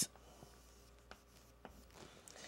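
Chalk writing on a blackboard: a few faint, short strokes.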